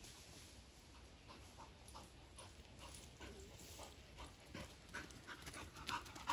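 A dog panting faintly as it trots along a dirt path, with soft, irregular steps that get louder near the end.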